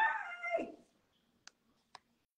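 A short, high, pitched vocal sound that glides down in pitch near its end, then two faint clicks.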